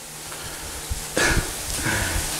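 Faint steady sizzle of chicken and pancetta frying in hot pans, with two short breathy chuckles from the cook, one about a second in and one near the end.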